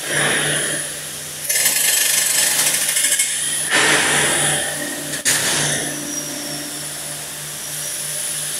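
A handheld power tool worked on a steel frame in three bursts of a second or so each, with a sharp click about five seconds in, over a steady hum of shop machinery.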